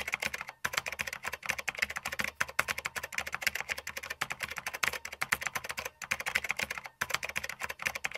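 Computer keyboard typing sound effect: a fast, even run of key clicks with a couple of brief pauses, accompanying text being typed out on screen.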